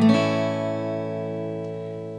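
An A major chord strummed once downward on an acoustic guitar from the open 5th string, with the low E string left out, then left ringing and slowly fading.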